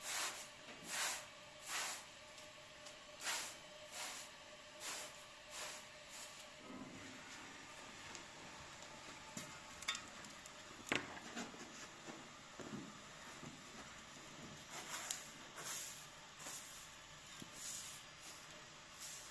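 Short-handled straw broom sweeping a floor covering: a run of brief, brisk swishes, roughly one every second or less. The strokes ease off midway, where a couple of sharp knocks sound, and pick up again near the end.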